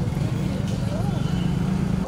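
Open-air market ambience: a steady low rumble of road traffic, with a faint voice in the background about a second in.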